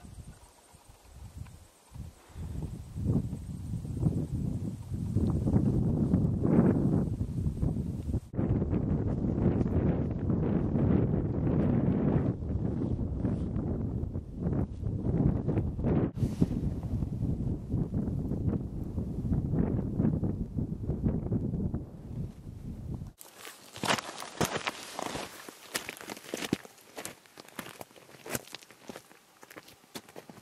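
Footsteps of hikers through tussock grass under a heavy low rumble on the microphone. About three-quarters of the way through, the sound turns lighter, to the crisp crunching of boots on rocky ground.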